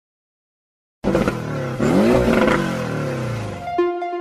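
Channel-intro sound effect: after a second of silence, a loud engine-like sound starts suddenly and its pitch rises and falls once like a revving car. It stops just before the end, where keyboard music notes begin.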